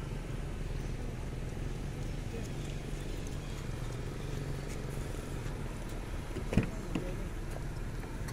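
Steady low motor hum, like an engine idling close by. A sharp knock comes about two-thirds of the way through, with a softer one just after.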